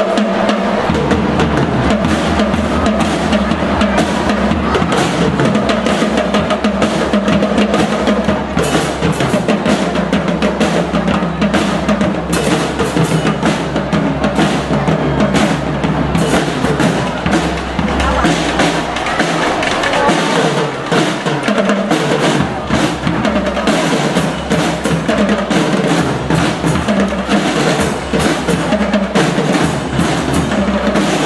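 Drum and lyre band playing: snare and bass drums keep a driving marching beat with rolls under the melody. The low bass drum drops out briefly about twenty seconds in.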